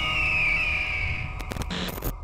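Logo-animation sound effect: a high tone glides slowly downward over a low rumble, then a few short digital glitch crackles come in the last half-second.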